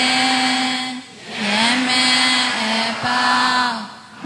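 A voice chanting a Burmese Buddhist verse of loving-kindness and merit-sharing in long, held, drawn-out notes, with a short break about a second in.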